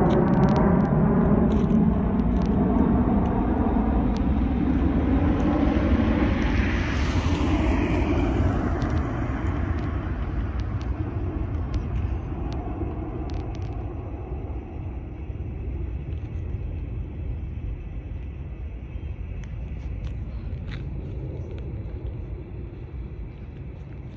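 Jet engine rumble of a four-engined Airbus A340 passing overhead and climbing away, fading steadily, with a hissing sweep partway through.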